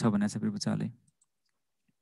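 A man's voice lecturing for about the first second, then cutting off to near silence.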